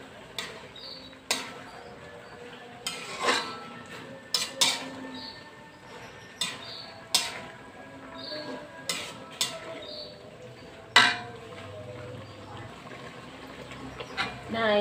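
Metal spatula stirring vegetables in an aluminium wok, clinking and scraping against the pan in irregular strikes, the sharpest about eleven seconds in.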